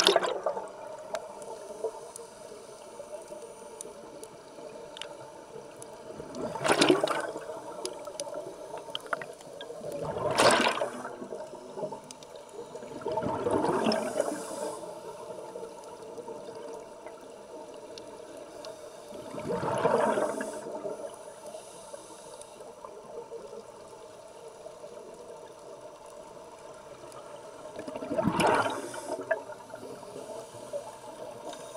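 Scuba diver breathing out through a regulator underwater: bursts of rushing bubbles six times, a few seconds apart, over a steady background hiss.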